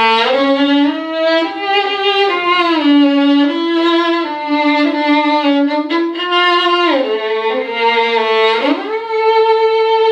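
Solo violin played on a Thomastik Dominant silver-wound G string: a slow, low melody of held notes with slides between them, one slide rising near the end. The player finds this string hard to get a full sound from and has to dig in with the bow.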